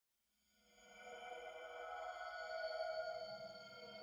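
Channel-intro synthesizer drone: several steady, held tones that fade in from silence over about the first second and then sustain.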